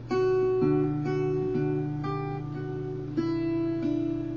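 Acoustic guitar fingerpicked over a D chord: single notes picked one after another and left to ring, a new note about every half second.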